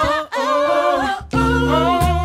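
Several voices singing wordless a cappella harmonies, holding chords with vibrato. There are short breaks near the start and just past a second in, after which a deep low part joins.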